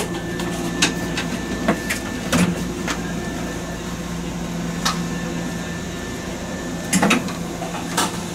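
Inside the cab of a stationary electric train: a steady low hum from the train's equipment, with irregular sharp clicks and knocks scattered through it.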